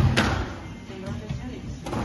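Squash ball knocks during a rally: two sharp knocks close together at the start, the ball off the racket and the wall, and another near the end.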